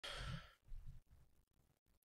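Near silence, opening with a faint, brief breathy hiss lasting under half a second.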